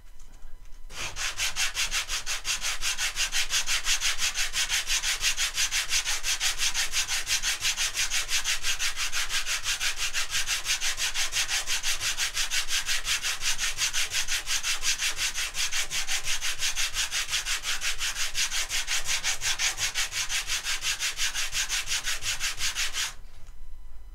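Small wooden blocks sanded by hand, rubbed back and forth on a flat sheet of sandpaper in quick, even strokes. It starts about a second in and stops about a second before the end.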